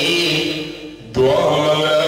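A man's voice in drawn-out, sing-song recitation into a microphone, holding long notes, with a short break for breath about a second in.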